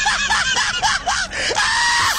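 A person's voice shrieking in a rapid string of short high-pitched cries, about four a second, over a steady hiss.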